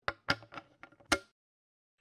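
The FlashFoot 2 solar-mount cap being pressed and snapped onto its lag-bolt water seal: a quick series of small clicks, with a sharper snap just over a second in.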